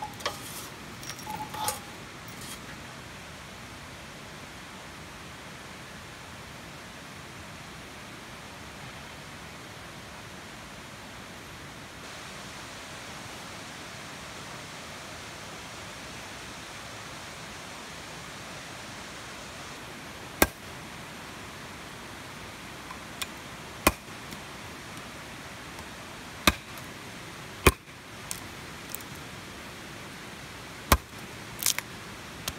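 Steady rush of a fast-flowing river in the background. A few light metallic scrapes and clinks in the first couple of seconds as ashes are raked out of a steel tent stove; in the last ten seconds a machete chops into a branch on a wooden block, about four sharp strikes with a few lighter taps between.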